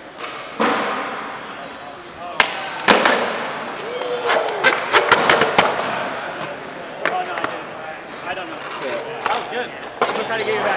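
Skateboard wheels rolling on a concrete floor, with two sharp board smacks about two and a half and three seconds in, as of a trick popped and landed. Voices shouting and a run of claps follow around the middle.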